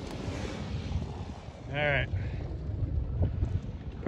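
Low rumble of a Hyundai all-wheel-drive SUV driving off-road at a distance, mixed with wind buffeting the microphone. A short vocal call cuts in just under two seconds in.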